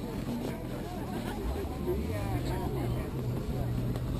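Indistinct chatter of several voices at a distance, with a low steady motor hum that comes in past the first second and steps up in pitch a little after halfway through.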